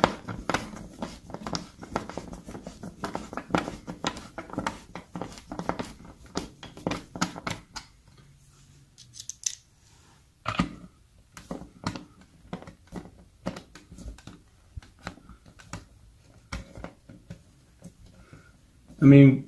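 Hand screwdriver turning a mounting screw into a plastic thermostat base plate: a quick run of small clicks and scrapes. About eight seconds in it stops briefly, then more scattered clicks and taps follow as the plate is handled.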